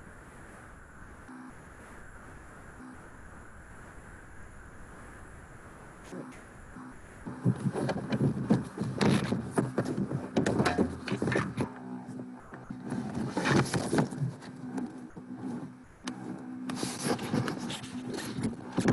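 Quiet room tone, then about seven seconds in the loud, irregular rustling, bumps and knocks of the recording device being picked up and carried, its microphone rubbing close against clothing.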